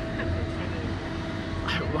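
Steady low mechanical hum with a faint steady whine from the Slingshot ride's machinery, with no distinct knocks or rhythm.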